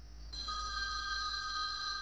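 Mobile phone ringtone for an incoming call: several steady tones held together, getting louder about a third of a second in.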